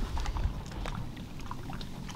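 Ambient sound aboard a small aluminium fishing boat on open water: a low steady rumble with faint scattered ticks and light water sounds.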